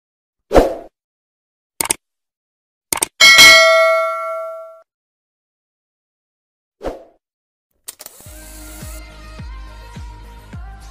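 Subscribe-button animation sound effects: a soft thump, a few sharp clicks, then a bright bell ding that rings out for about a second and a half, and another soft thump. Intro music with a steady beat starts near the end.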